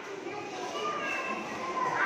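Children's voices chattering in a large room, with no single clear call.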